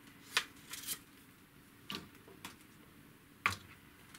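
Handling noise from a carbon feeder rod and a measuring tape: a handful of short, sharp clicks and taps, the loudest shortly after the start and near the end.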